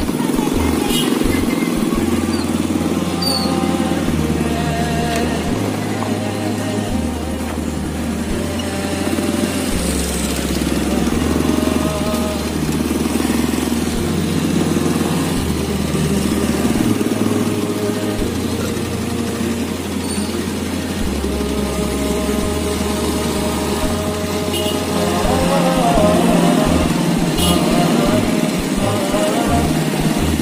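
Motorcycle and car engines running at a slow crawl, mixed with music carrying a deep bass line that steps between held notes every second or two, and voices.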